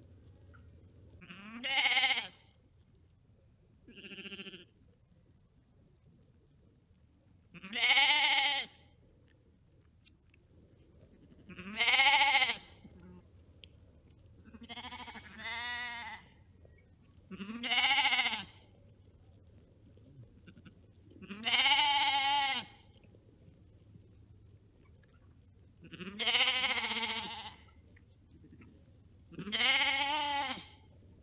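Sheep bleating: about nine separate wavering baas, each about a second long, coming every three to four seconds, with two close together around the middle.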